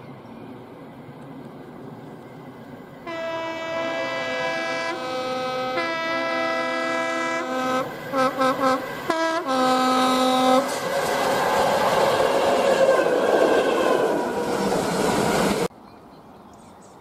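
Locomotive two-tone horn sounding a long sequence alternating between its two notes, then a few short quick toots, the 'whoop' of a Class 73 electro-diesel passing with a freight. It is followed by the rumble and wheel clatter of the locomotive and wagons going by, which cuts off suddenly near the end.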